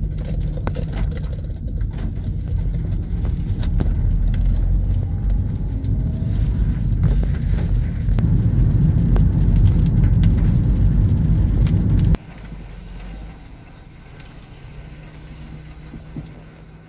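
Loud, steady low rumble of a car driving on a wet road, heard from inside the cabin, with scattered ticks over it. The rumble builds gradually, then drops off suddenly about twelve seconds in to a much quieter hum.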